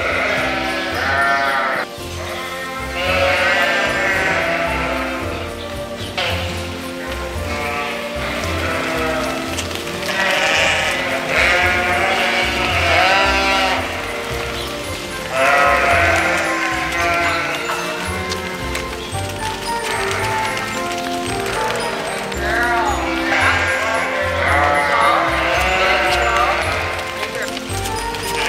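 A flock of ewes bleating, many calls overlapping in bouts every few seconds, over background music with a steady bass line.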